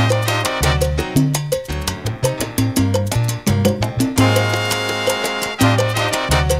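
Salsa music: a salsa romántica recording, with a bass line moving under a steady percussion beat.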